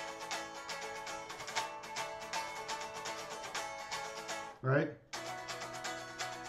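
Electric guitar strumming chords in a steady rhythmic groove on open strings. Near the end a short, loud vocal sound cuts in and the strumming briefly stops before starting again.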